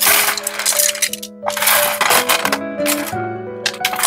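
Bamboo knitting needles and small metal crochet hooks clattering against each other and the plastic tray as they are handled and dropped in, in several loud bursts, over background music.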